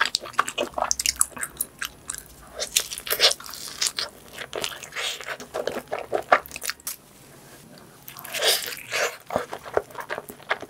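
Close-miked ASMR eating of pizza: a steady run of bites and chewing with many small clicky mouth sounds, easing off briefly about seven seconds in before a louder bite-and-chew cluster.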